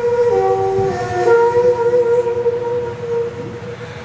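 Daegeum, the large Korean bamboo transverse flute, playing slow, long held notes that step down and then back up in pitch, fading near the end.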